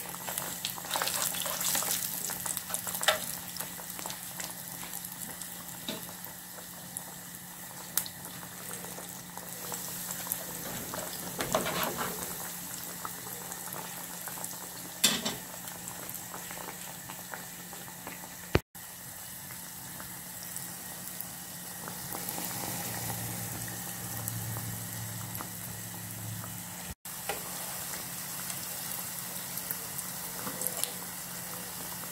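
Ring doughnuts deep-frying in hot oil in a skillet, a steady sizzle and crackle. A few sharp taps of metal utensils against the pan come through. The sound drops out for an instant twice.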